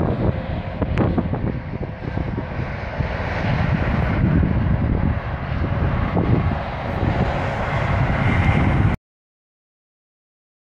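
Wind buffeting an outdoor microphone: a loud, uneven low rumble with a single click about a second in. It cuts off abruptly about nine seconds in.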